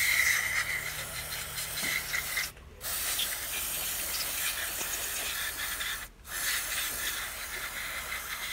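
Aerosol carburetor cleaner hissing out of the can in three long sprays, with two short breaks about two and a half and six seconds in, washing out a fuel-injection throttle body.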